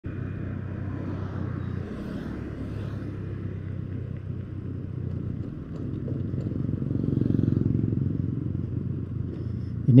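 Vehicle engine running steadily while driving along a road, with road noise. It grows louder about seven seconds in, then eases off.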